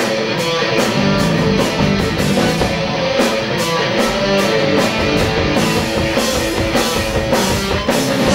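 Live rock band playing an instrumental passage: distorted electric guitars over drums keeping a steady beat, with cymbal hits.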